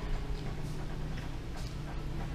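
Water tanker's delivery pump and hose running after the tank has emptied: a steady low rumble with a few faint, irregular clicks, the sign of an empty tanker.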